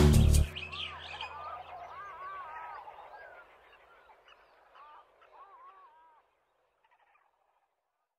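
The song's final loud chord cuts off about half a second in. Then birds chirp in many short, quick calls that fade away over the next five seconds, leaving silence.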